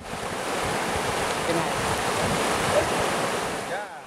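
Fast-flowing floodwater in a swollen river making a steady rushing noise, which fades out just before the end.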